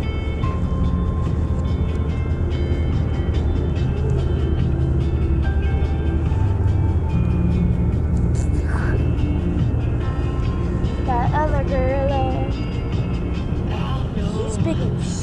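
Music playing on a car radio inside the cabin, over the steady low rumble of the car. A voice comes in about eleven seconds in.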